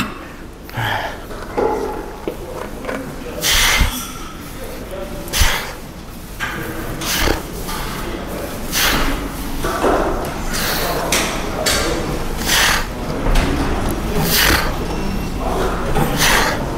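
A man's forceful breaths in time with each rep of a wide-grip lat pulldown, about one every two seconds.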